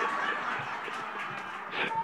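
A congregation laughing together, with a spread of many voices that slowly dies away.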